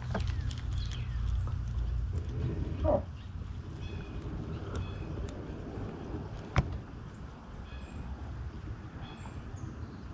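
Small birds chirping faintly in short, repeated calls over a low rumble that drops away about three seconds in. A single sharp click comes from the spinning reel about six and a half seconds in.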